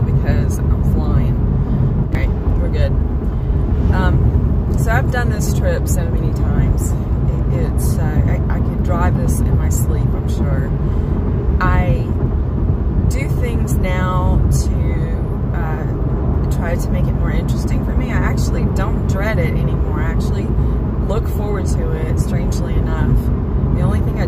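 Steady low road and engine rumble inside a moving car's cabin, with a woman talking over it.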